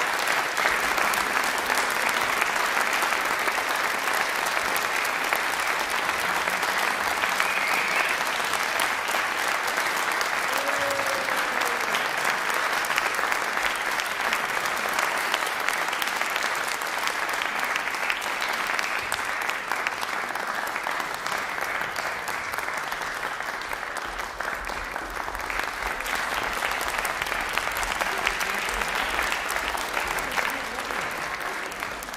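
Concert audience applauding, a dense steady clatter of many hands clapping that eases slightly about three-quarters of the way through, then picks up again.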